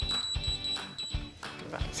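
A steady high electronic beep from an induction hob's touch controls as it is switched on, cutting off a little over a second in. Background music with a steady beat plays under it.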